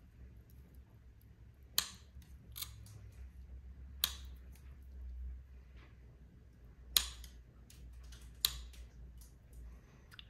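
Wheeled mosaic glass nippers snapping through small pieces of black stained glass, about five sharp cuts at uneven intervals, the loudest about seven seconds in. Each snap is a corner being nipped off to round the piece into a pupil.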